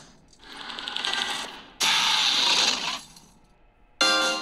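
Movie-trailer sound effects from a video ad: a fast mechanical clicking rattle that swells, then a sudden loud rush of noise about two seconds in that fades away within a second.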